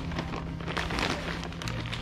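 Crackly rustling of a plastic bag of potting mix as a hand digs into it for soil.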